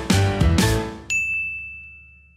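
Title-sequence music with a steady beat stops about a second in on a single bright ding, which rings on and slowly fades away.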